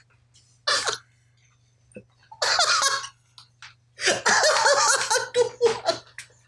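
A man laughing hard in three bursts: a short one about a second in, another near the middle, and a long, loud one over the last two seconds.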